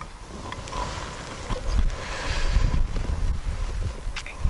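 Wind buffeting the microphone in gusts, growing stronger after the first second, over rustling of clothing and a few light clicks as the hare is hooked onto a small hanging scale and lifted.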